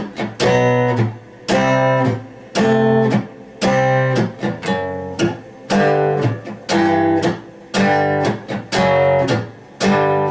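Steel-string acoustic guitar strumming a 12-bar blues rhythm groove in G. The chords come in a repeating pattern, about one ringing accented chord a second with short, choppy strokes between.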